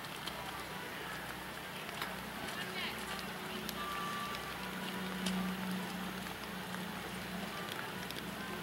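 Outdoor ambience: indistinct voices too faint to make out over a steady low hum that swells for a second or two in the middle, with a few faint clicks.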